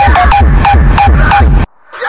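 Raw hardstyle dance music: a heavy, fast kick drum under short, high synth stabs. It cuts off suddenly near the end for a brief moment of silence before the next section comes in.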